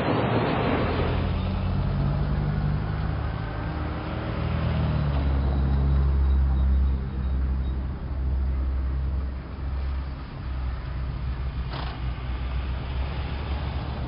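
A low, steady engine rumble whose pitch shifts a few times, with one sharp click near the end.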